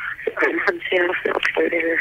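Speech heard over a telephone line, thin and narrow-band, with a raised pitch typical of a woman's voice.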